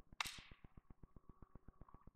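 A single sharp crack about a quarter second in, dying away within half a second. Under it runs a steady fast ticking of about ten beats a second.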